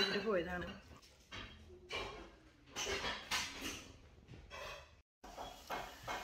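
A woman's voice speaking quietly in short, broken phrases, with a brief dropout to silence about five seconds in.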